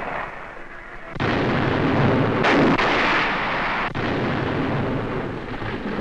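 Explosions: a heavy blast about a second in that carries on as a continuous deep rumble, with a second blast at about two and a half seconds.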